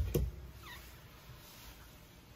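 A camper closet door being pulled open: a sharp click as the latch lets go, then a faint short squeak as the door swings.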